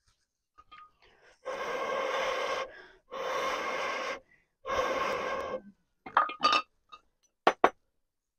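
Three long blows through a blowpipe into a wood fire in a floor stove, fanning the flames, each lasting about a second. A few short sharp clicks follow near the end.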